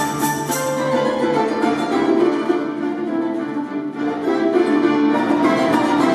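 Folk instrument ensemble of domras, balalaika and button accordion with piano playing. The music thins briefly about four seconds in, then the full ensemble comes back in.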